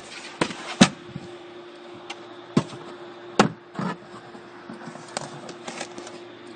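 Knocks and clicks of boot floor panels being handled in a car's boot, about seven separate strokes, the loudest a sharp knock just under a second in, over a steady faint hum.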